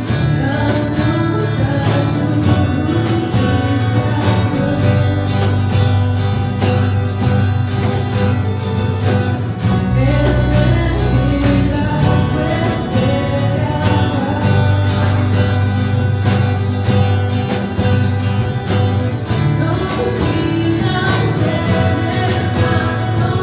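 Live worship band playing a Spanish-language song: a woman sings the lead over strummed acoustic guitar, electric guitar and a drum kit, with steady low notes underneath.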